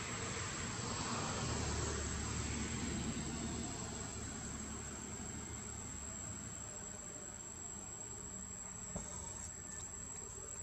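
Steady high-pitched insect drone, over a broad rush of outdoor noise that is strongest in the first few seconds, with a light click about nine seconds in.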